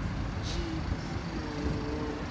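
Low, steady road and engine rumble of a car riding in traffic, with a brief hiss about half a second in.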